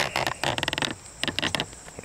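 Crickets chirring steadily in a high, even tone, under a run of quick clicks and crackles that is densest about half a second in and again briefly near the end.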